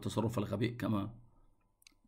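A man's lecturing voice for about the first second, then a pause with a single faint click near the end.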